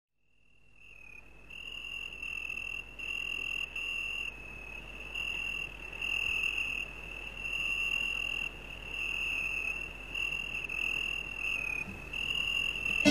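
Crickets chirping: a steady, high-pitched trill broken into phrases about a second long, fading in over the first second or so.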